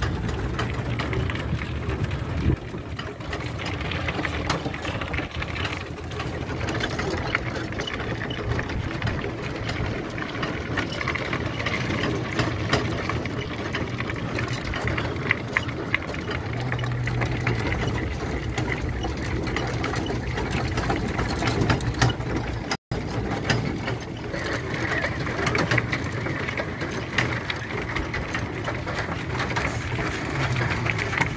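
Electric trike towing a small camper trailer along a dirt and gravel track: a steady mechanical whirr and rattle, with a low hum that comes and goes and the tyres crunching over the ground. A sudden brief dropout about three-quarters of the way through.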